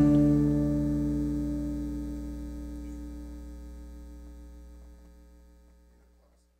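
Final strummed chord of an acoustic guitar ringing out and dying away evenly to near silence by the end, over a steady low mains hum.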